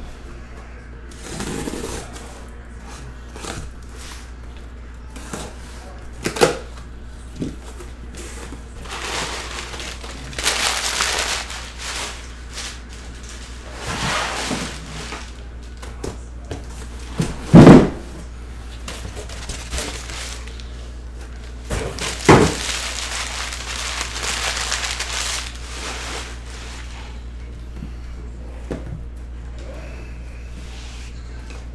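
A cardboard shipping case being cut and torn open by hand: scraping and ripping of cardboard and packing tape in several stretches, with a few sharp knocks as the case and boxes are handled, the loudest a little past halfway. A steady low hum runs underneath.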